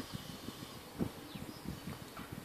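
Faint low knocks and rumble close to the microphone, the sound of a handheld camera being handled, with a slightly louder knock about a second in.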